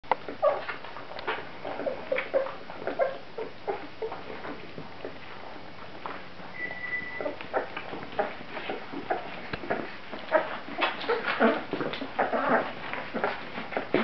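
17-day-old Great Dane puppies nursing, making many short squeaks and whimpers that come thicker in the second half.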